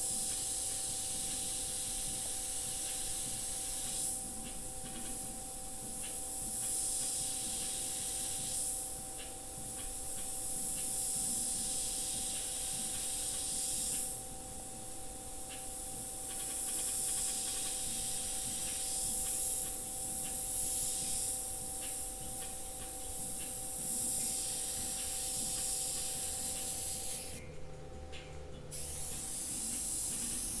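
Airbrush spraying paint. Its air hiss swells and eases in strokes as the trigger is worked, and stops for about a second near the end. A faint steady hum runs underneath.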